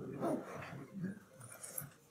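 Faint, indistinct human vocal sounds with light rustling.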